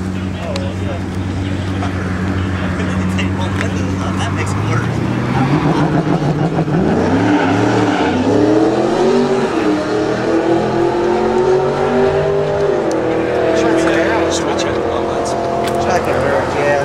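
A car engine running steadily, then accelerating hard from about five seconds in, its pitch climbing, dipping once as at a gear change, and holding high in the last few seconds.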